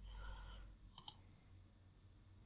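Two quick, sharp computer mouse clicks, close together, about a second in, over near silence.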